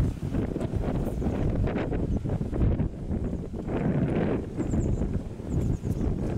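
Wind buffeting the microphone: a gusty, uneven low rumble with no steady tone, and a few faint high chirps near the end.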